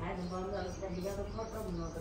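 A person's voice, indistinct and not made out as words, with small birds chirping faintly in the background.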